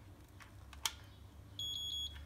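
Arzum Okka Minio Turkish coffee machine giving a single high electronic beep, about half a second long, as it is switched on: the signal that it is ready for coffee to be added and the start button pressed. A sharp click comes shortly before the beep.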